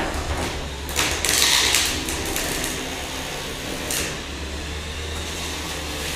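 A 3 lb combat robot's weapon striking and grinding against its opponent's metal chassis, with sharp impacts about a second in and again near four seconds, over a steady low hum.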